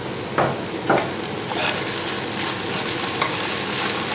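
Minced pork and sliced onions sizzling in a nonstick frying pan, stirred with a metal spoon after sweet soy sauce is drizzled in. A few short scrapes of the spoon come about half a second and a second in.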